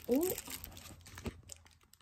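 Plastic bubble mailer crinkling as it is handled, a run of faint scattered crackles.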